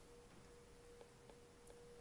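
Near silence: room tone with a faint steady tone and a few faint taps of a stylus on a tablet screen about a second in.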